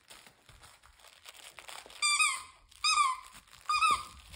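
A dog chewing a plush squeaky toy: soft crinkling and mouthing noises, then the toy's squeaker squeaks three times, about a second apart, in the second half.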